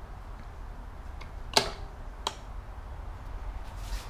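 E-bike folding pedal being folded up by hand: a faint tick, then two sharp clicks less than a second apart, about a second and a half and two seconds in, over a low steady hum.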